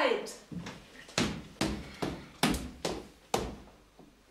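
Footsteps coming down a staircase: a run of separate, hard treads, about two to three a second.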